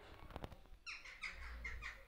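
A bird calling: a quick run of about five short, downward-sliding chirps about a second in, preceded by a few faint clicks.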